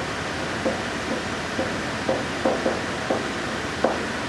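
Steady background hiss, with about eight short, light taps spread through it.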